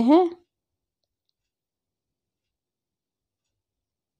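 A woman's voice finishing a word, then dead silence: no sound of the ker berries dropping into the water is heard.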